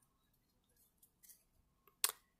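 Near silence, with only faint, soft handling sounds from a stack of trading cards being slid and squared in the hands.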